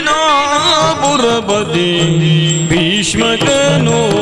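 Yakshagana music: a singer's melismatic, ornamented vocal line over a steady low drone, with maddale drum strokes scattered through, the strongest about three seconds in.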